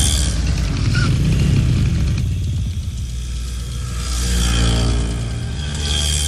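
Film soundtrack of road traffic: motor vehicle engines running, mixed with background music, with a louder rush near the end as a car passes close.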